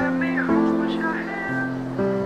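Background music: sustained guitar chords that change about every half second to a second, with a high voice sliding up and down over them.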